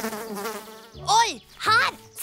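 Cartoon buzzing of a small flying insect, a wavering drone that fades out about a second in. Near the end come two short voice sounds that swoop up and down in pitch.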